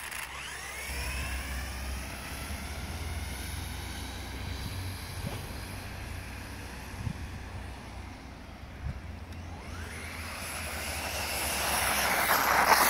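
Electric 1/10 RC buggy's 3.5-turn brushless motor, driven by a 120 A ESC, whining at high speed. The whine climbs in pitch as the buggy accelerates away, holds steady while it runs farther off, then rises again and grows louder near the end as it comes back, over a steady low rumble.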